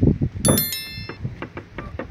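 A bright bell ding about half a second in, ringing briefly before fading, from the notification-bell sound effect of a subscribe-button overlay, over wind noise on the microphone.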